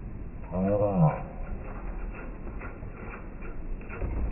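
A single drawn-out voiced call, about half a second long, rising and then falling in pitch, followed by faint light taps.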